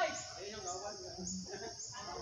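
Insects in the surrounding forest keep up a steady high-pitched buzz, with a short rising chirp about twice a second.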